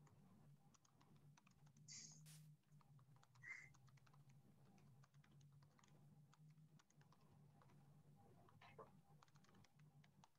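Faint computer-keyboard typing: a fast, uneven run of key clicks over a low steady hum, with a brief louder noise about two seconds in and another about three and a half seconds in.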